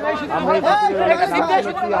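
Men talking, with no other sound standing out.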